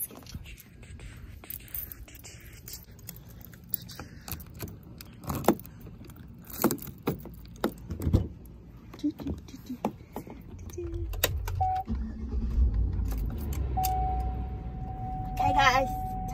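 Clicks and knocks of the truck's door handle and door as it is opened and the driver gets in, with keys jangling. From about two-thirds of the way through, a steady low rumble of the truck's engine running, and near the end a steady high tone comes in.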